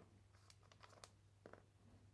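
Near silence with a steady faint hum and a few faint clicks of small metal gears and pins from an impact wrench's planetary gear set being handled.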